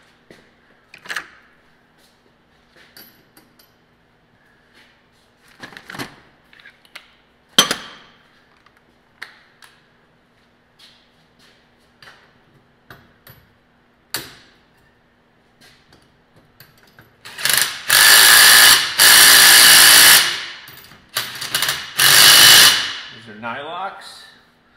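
Scattered metal clinks and knocks of tools and parts being handled, then a cordless impact wrench run in two long bursts of a few seconds each, tightening the rear suspension hardware, with a falling whine as it spins down near the end.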